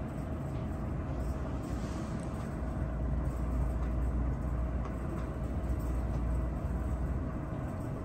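Steady low rumble of meeting-room background noise with a thin steady hum, picked up through the table microphones, and a few faint clicks.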